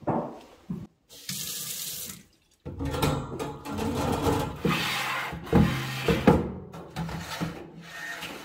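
Kitchen faucet turned on, water running into a dark stainless steel farmhouse sink with a wire bottom grid. There is a short first burst, a brief stop, then a longer run with a few knocks from the sink fittings.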